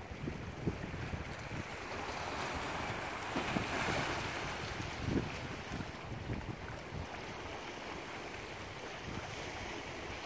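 Small sea waves lapping and washing against shoreline rocks, swelling to their loudest about four seconds in, with wind buffeting the microphone.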